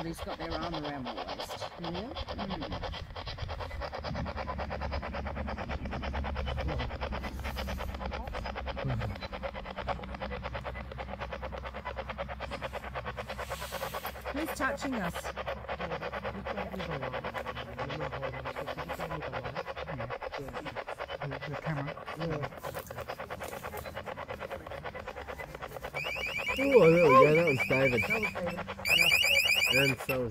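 Electronic alarm tone from a ghost-hunting trigger device going off near the end in two short, loud runs, with voices reacting over it. Before that, only a low background with faint voices.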